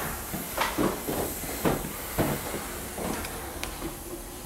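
Footsteps on a hard floor, about two a second, over a steady hiss.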